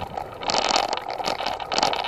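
Rattling, scraping noise from a camera in motion over a rough dirt path, with no motor heard. There are bursts of hiss about half a second in and again near the end.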